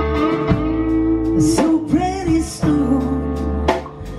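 Live blues band playing: electric guitar lead with bending notes over keyboards, bass and drums, with a strong drum hit about once a second.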